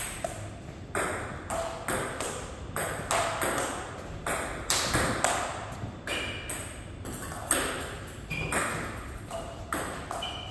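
Table tennis rally: a plastic ball struck by paddles and bouncing on the table, a steady run of sharp clicks two or three a second, many with a short ringing ping.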